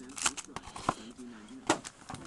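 Foil trading-card packs being handled on a table: a few sharp crinkles and taps, about three in two seconds, with faint speech in the background.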